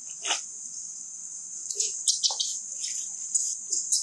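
A steady high-pitched insect drone, with a few short sharp crackles and squeaks from long-tailed macaques moving over dry leaves: one about a third of a second in, a quick cluster around two seconds in, and one near the end.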